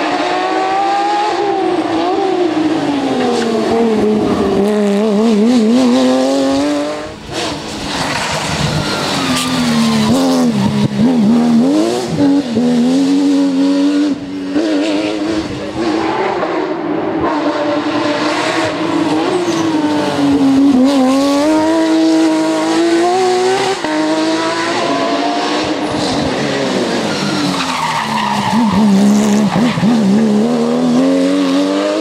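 Porsche 911 GT3 rally car's flat-six engine at full stage pace, revving high and dropping again and again as it brakes, shifts down and accelerates through tight bends. The pitch swoops down and back up several times.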